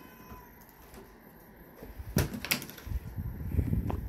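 Two sharp clicks about two seconds in, half a second apart, followed by a low rumble and another knock near the end.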